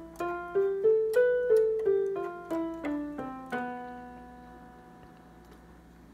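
Casio CTK-3200 keyboard with a piano voice playing the Locrian mode scale on the white keys from B, one note at a time: up to the top B about a second in, then back down step by step to the low B, which rings out and fades.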